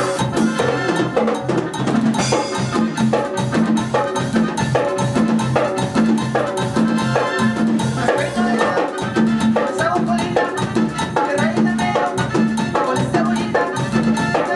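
A band playing a dance number with a steady, even beat: electric bass, keyboards and drum kit.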